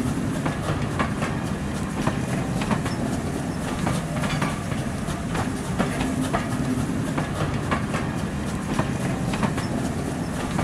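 Railway carriages running past close by: a steady rumble of the wheels on the track, with repeated clicks as they pass over the rail joints.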